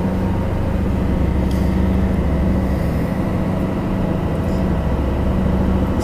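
A ferry's engine running steadily at cruising speed, a low, even drone with a steady rush of noise over it.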